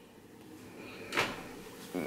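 A single short, soft knock about a second in, in an otherwise quiet room.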